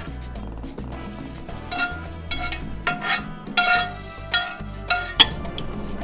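Metal clinks and taps of a hand can opener and utensils against a tin can and a glass dish, with one sharp click near the end, over background music.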